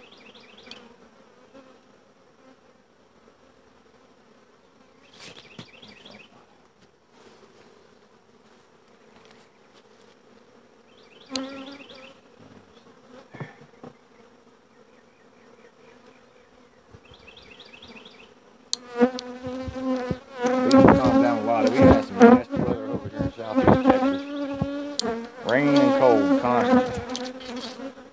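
Honeybees buzzing around an open hive, a steady hum. From about two-thirds of the way in it grows much louder, the pitch wavering up and down as bees fly close past the microphone, with a few sharp clicks.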